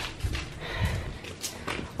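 Footsteps on a concrete path and handling noise from a handheld camera, heard as a series of irregular soft knocks over a low rumble.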